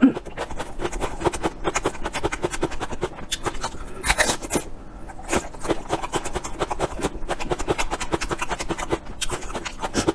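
Close-miked crunching and chewing of raw red onion in the mouth: many quick, crisp crunches, with a few louder ones about four and five seconds in.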